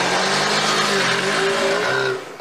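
A car driving off fast, its engine revving over a loud rush of noise, with a few wavering tones from the engine.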